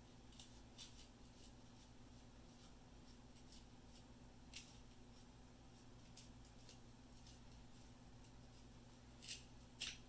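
Faint, near-silent handling: small scattered cracks and ticks as a towel-wrapped lithium cell-pack circuit board is slowly bent to snap along its break line. A couple of sharper cracks come near the end, over a low steady hum.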